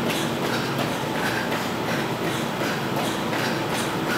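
Sneakers landing on a tile floor in a steady, repeated patter as a person runs in place with high knees.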